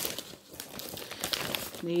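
Plastic packaging bags crinkling and rustling in irregular bursts as they are picked up and handled.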